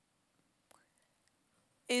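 Near silence with one faint click about a third of the way in, then a woman's voice resumes speaking just before the end.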